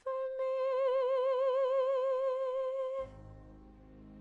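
Female singer holding one long, high note with a steady vibrato for about three seconds, cut off sharply, followed by quieter backing music.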